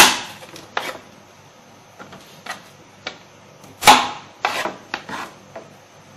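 Kitchen knife cutting through a bitter gourd onto a plastic cutting board: a series of irregular knocks as the blade meets the board. The loudest knocks come at the start and about four seconds in.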